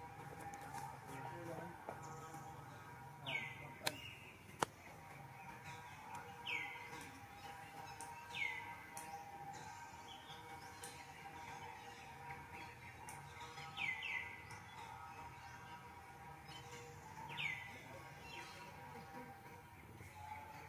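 Short high chirping calls that fall quickly in pitch, repeated every few seconds, over a faint steady background. There are two sharp clicks about four seconds in.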